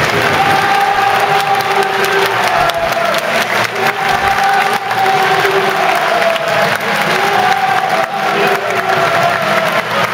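Football stadium crowd cheering and clapping, with a slow held melody of sustained notes running underneath.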